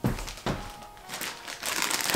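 A plastic zip-top bag crinkling as it is handled, growing busier toward the end, with a couple of knocks in the first half second.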